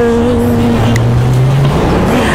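Gospel song: a woman's sung note is held for under a second and ends, then the backing music carries on with a low bass note that rises slightly, between sung lines.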